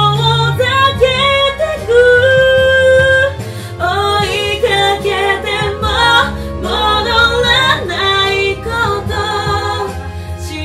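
Women singing a slow pop ballad in Japanese, a lead female voice joined by the two others in harmony partway through, over a sustained instrumental backing.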